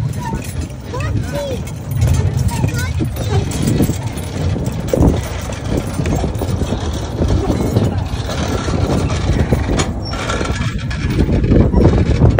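Horse-drawn double-decker tram rolling along its rails, a steady low rumble, with a few sharper knocks near the middle and again near the end.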